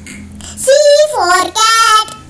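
A child singing two short phrases, starting about half a second in, the pitch sliding between notes.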